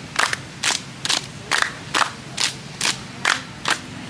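A group clapping hands in unison, a steady beat of about two claps a second, keeping time for a clapping drinking game.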